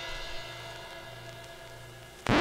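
The last chord of a music intro, with a cymbal wash, ringing out and fading away steadily.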